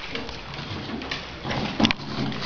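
A dog's soft, low moaning, with a couple of short clicks in the second half.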